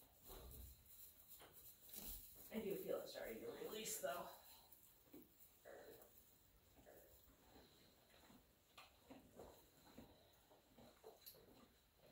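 Near silence, with faint rustles and soft clicks from hands working over a horse's coat. About two to four seconds in there is a brief, low voice-like sound.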